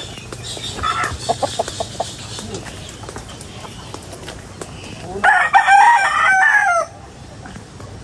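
Chickens clucking, then a rooster crows once about five seconds in, a call of under two seconds and the loudest sound here.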